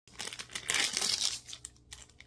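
Plastic ice-cream bar wrapper crinkling and tearing as it is pulled open by hand. The crackling is loudest about a second in, then thins to a few scattered crackles.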